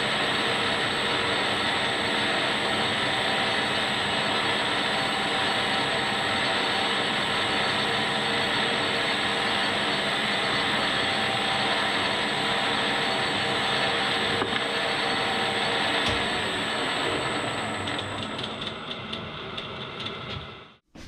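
Warco 280 metal lathe running steadily, its drive humming with a thin high whine, as it turns a brass piston. Near the end it is switched off and winds down to a stop.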